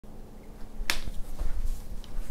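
A single sharp snap about a second in, with a fainter click just after, over soft low footsteps as a person walks up to the whiteboard.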